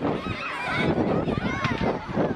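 A crowd of children shouting and squealing over one another, with a high rising shriek about one and a half seconds in.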